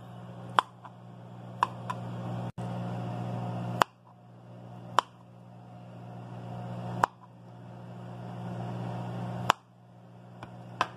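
Kitchen knife cutting through boiled green bananas and tapping a plastic cutting board: six sharp taps spaced a second or two apart, over a steady low hum.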